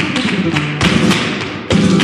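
Vintage flamenco recording of guitar with sharp percussive hits, one a little under a second in and another near the end.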